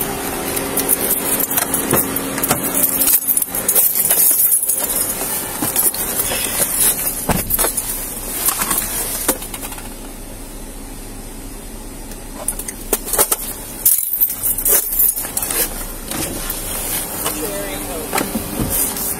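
Body-worn camera rubbing and knocking against a deputy's uniform and gear as he walks to a patrol SUV and climbs into the driver's seat, with keys jangling. There are a few sharp knocks about three quarters of the way through.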